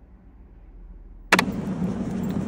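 Faint room tone, then about a second and a quarter in a sudden cut, marked by a sharp click, to much louder public-place ambience: a steady low hum under general background noise.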